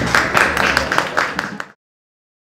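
Audience applauding with many hands clapping, cut off abruptly about three quarters of the way through.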